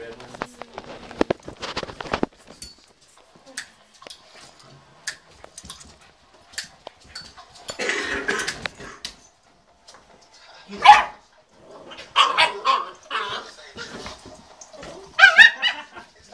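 A pit bull puppy and a wolf-hybrid dog play-fighting: a flurry of quick clicks and scuffles at first, then a series of barks and yips, the loudest past the middle and a quick run of high yips near the end.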